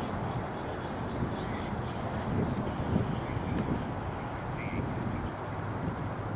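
Low, steady rumble of an approaching CSX EMD SD40 diesel locomotive, with a faint short chirp about three-quarters of the way through.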